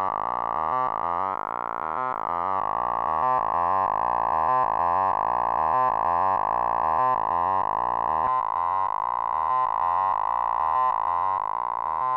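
Eurorack synthesizer sequence of quick, changing notes played through the Haible Dual Wasp filter, its resonance turned up so that a steady whistling tone rings above the notes while the cutoff and resonance knobs are adjusted.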